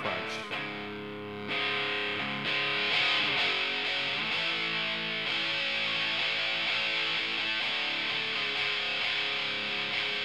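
Music Man StingRay played through a Fault V2 overdrive pedal into an Earth amp, giving a distorted tone. It is picked lightly at first, then harder from about a second and a half in, and it breaks up into more crunch as the attack digs in.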